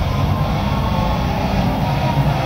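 Wrestler's entrance music playing loudly over an arena PA, with a heavy, boomy bass, recorded from the stands.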